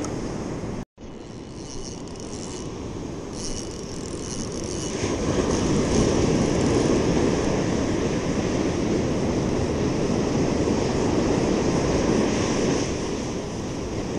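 Wind rumbling on the microphone over breaking ocean surf, a steady dense noise that grows louder from about halfway through; the sound cuts out for an instant about a second in.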